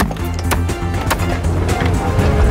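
Pickaxes and crowbars striking frozen ground, a few sharp strikes about half a second apart, over background music with a steady low drone.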